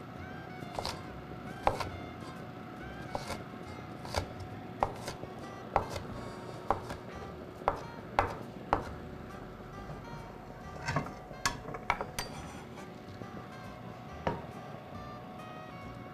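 Chinese cleaver chopping onion on a wooden cutting board, with sharp knocks about once a second and a quicker run of chops about two-thirds of the way through. Background music plays underneath.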